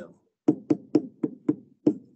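Stylus tapping and clicking on a tablet screen while handwriting: about six sharp taps, roughly three a second, one for each pen stroke.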